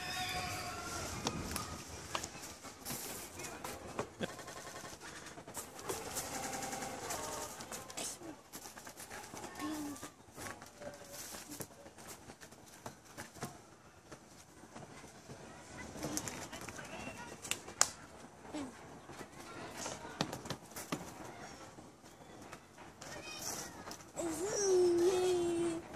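Faint background voices, too quiet to make out words, with scattered small clicks and knocks.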